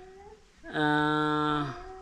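A man's drawn-out hesitation hum, one steady held vowel lasting about a second. A faint, higher, wavering call comes just before it and again near the end.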